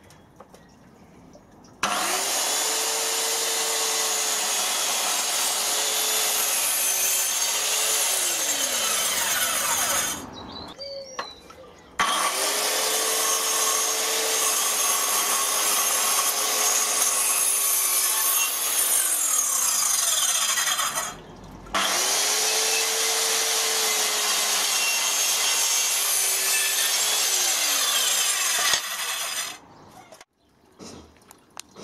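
Handheld electric circular saw cutting decking boards three times. Each time the motor spins up to a steady whine, cuts for about seven to eight seconds, then winds down as the trigger is released.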